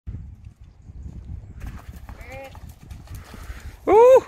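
Dull, irregular hoofbeats of a pony cantering on grass, with low rumble. There is a faint short call about halfway through and a loud, short shout that rises then falls just before the end, as the pony takes off over a jump.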